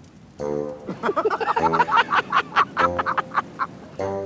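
Several people laughing in quick bursts over a held note of background music.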